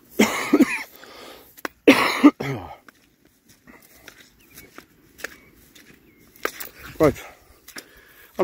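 A man coughs twice, two harsh bursts about a second and a half apart, with a shorter throaty sound near the end.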